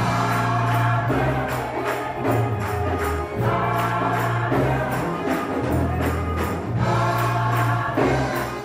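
Gospel choir singing in full voice over a band, with sustained bass notes changing about once a second and a steady percussion beat.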